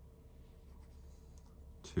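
Faint scratching and light clicking of metal double-pointed knitting needles working a stitch through brushed acrylic yarn, a few soft ticks scattered over a steady low hum.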